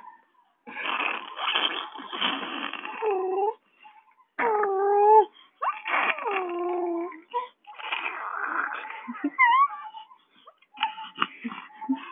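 Baby vocalizing: breathy, noisy bursts over the first few seconds, then drawn-out cooing sounds with wavering pitch, and a short high rising squeal about nine and a half seconds in.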